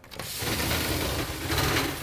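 Gortite aluminum roll-up compartment door on a fire apparatus being pulled open, its slats giving a steady rattling clatter as the door rolls up.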